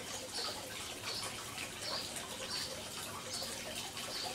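Faint water sloshing and trickling in a plastic fish tank as a hand moves through the water.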